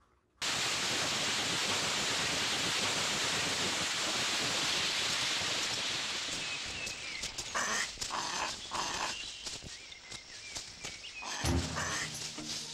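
Forest ambience: a steady rushing, hiss-like noise cuts in suddenly, then fades after about six seconds into quieter rustling with scattered clicks. An animal call starts near the end.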